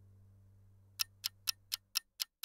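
Countdown-timer ticking sound effect, sharp ticks about four a second starting about a second in, while a faint low music tone fades out.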